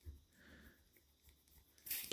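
Near silence with a faint click at the start, then near the end a brief hiss of air escaping as the shock pump's head is turned to release from the fork's air valve.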